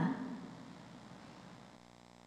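The last word of an announcement echoes away in a large hall, leaving quiet room tone. A faint steady hum comes in near the end.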